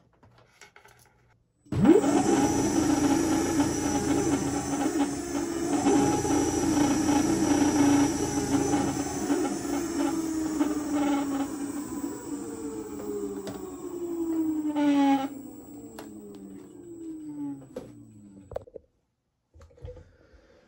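Kaabo 1100 W electric hub motor spinning free with no load, driven by a Ninebot Max G30D controller pushed to 65 V. About two seconds in it winds up sharply to high speed and runs with a loud whine under a thin high steady tone. From about fifteen seconds its pitch falls as it coasts down, and it stops just before the end.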